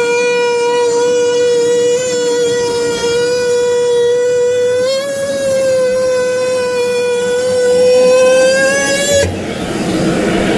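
A handheld power cutting tool running with a steady high whine as its blade cuts through the ceiling, the pitch dipping and recovering slightly as it loads. The motor stops abruptly about nine seconds in, leaving a rougher, noisier sound.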